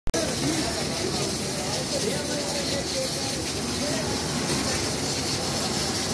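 Chicken karahi sizzling in a large karahi wok over a gas flame: a steady hiss, with voices faintly underneath.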